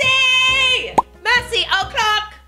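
A held, high pitched tone, then a quick rising plop about a second in, followed by short voice-like snippets.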